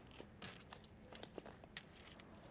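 Faint rustling of a clear plastic pouch, with a scatter of light clicks as the small items inside it are handled.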